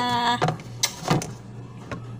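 A few short knocks and clatters as a plastic food container is taken out of a refrigerator and handled: three sharp clacks within about a second, over a steady low hum.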